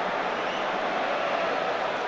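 Steady noise of a football stadium crowd, with no single shout or strike standing out.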